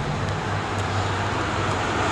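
Steady road traffic noise with a low hum underneath.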